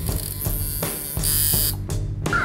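Electric tattoo machine buzzing as the needle works into skin, pausing briefly about a second in.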